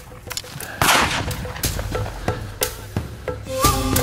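A single shotgun shot about a second in, echoing as it dies away, followed by a steady ticking beat of about three clicks a second. Music with held tones comes in near the end.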